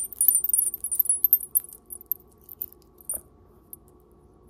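Small brass-tone bell charms on a beaded pendant jingling as they are handled: a quick, high tinkling for about two seconds, then a few single light clinks.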